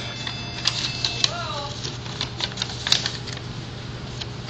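A paper slip being unfolded by hand: a run of small, irregular crinkles and clicks over a steady low hum. A faint voice is heard briefly a little over a second in.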